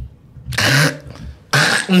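A man's short cough about half a second in, followed by another breathy vocal burst that runs into speech near the end.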